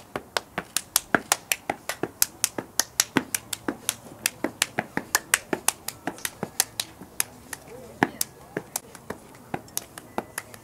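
Fraternity step routine: sharp hand claps and slaps in a fast, even rhythm of about four to five a second.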